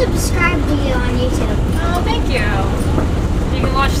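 Voices talking in short phrases inside a stripped, roll-caged race car's cabin, over the steady low rumble of the running car.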